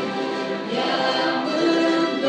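A church orchestra and choir performing a hymn in long held chords that move to a new chord partway through.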